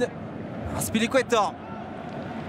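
A man's voice, a short outburst about a second in, over the steady low background noise of a football pitch in an empty stadium, with no crowd noise.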